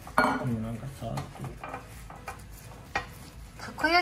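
Oiled kitchen paper wiping round the hollows of a takoyaki pan, with a few light knocks and clinks of cookware spread through.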